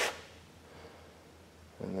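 A pause between spoken words: quiet room tone with a faint steady low hum, opening with a brief sharp hiss and ending as a man starts speaking again.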